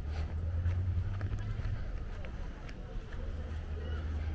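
Outdoor ambience: a steady low rumble with faint, distant voices and a few light clicks.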